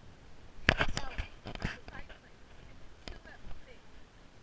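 A few sharp knocks from a GoPro camera being handled right up against it, the loudest about two-thirds of a second in, with brief bits of a child's voice between them.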